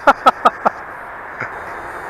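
A man laughing in a quick run of breathy pulses that trail off within the first second, followed by a steady faint background hiss.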